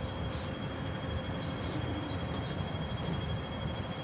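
Steady low rumble of city background noise, with a faint, steady high-pitched tone running through it.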